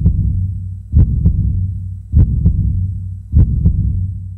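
Heartbeat sound effect: paired low lub-dub thumps repeating about every 1.2 seconds over a steady low hum, four beats in all, starting to fade near the end.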